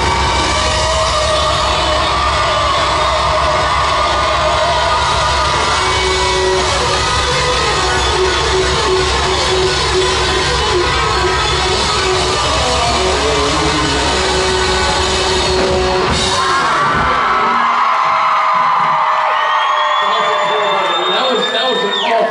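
Rock music from a band on stage, amplified in a large hall, with the audience yelling and whooping over it. About three-quarters of the way through, the bass and drums stop, leaving shouting and cheering from the crowd.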